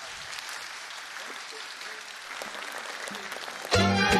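Theatre audience applauding steadily. Near the end a Romanian folk orchestra with violins suddenly strikes up loudly.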